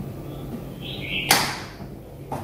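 A small plastic indoor Wi-Fi camera being handled: a brief scrape, then one sharp clack a little over a second in.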